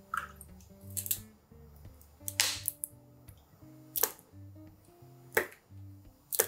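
Soft background music of plucked notes. Over it come about five sharp clicks and clinks from a metal measuring spoon, a glass bowl and sauce bottles as sauces are measured out, with one longer, splashier sound about two and a half seconds in.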